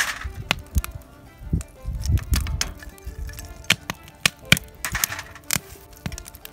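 Irregular sharp crackles and clicks from a campfire-heated cast-iron skillet of molten lead and spent bullet debris being skimmed, with light background music. A low rumble of wind on the microphone comes in about two seconds in.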